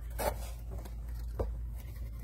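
Paper and cardboard rustling and sliding as items are handled on a desk, with a short sharp click about one and a half seconds in, over a low steady hum.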